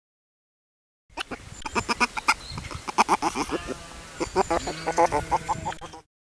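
Many short animal calls overlapping in a busy chorus, starting about a second in and cutting off abruptly at the end.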